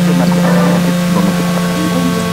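A loud, steady low hum with several sustained higher tones held above it, and faint indistinct voices underneath.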